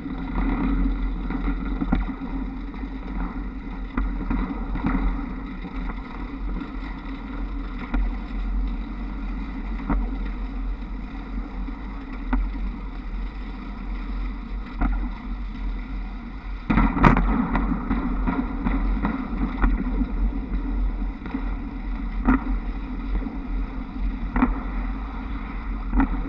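Wind rumble on the microphone and running noise of a Škoda 21Tr trolleybus heard from its roof, with occasional sharp clicks, the loudest about two-thirds of the way through, as the trolley pole shoes run along the overhead wires and their hangers.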